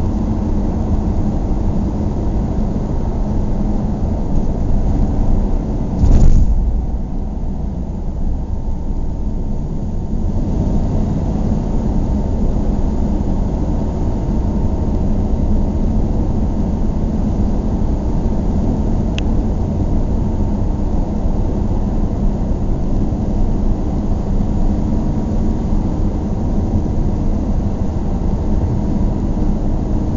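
Steady road and engine noise from a moving car, with a single loud thump about six seconds in.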